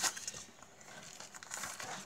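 Faint handling sounds of playing cards in a clear plastic card sleeve being slid out of a paper envelope and set down: a brief rustle at the start, then soft scattered rustles and light taps.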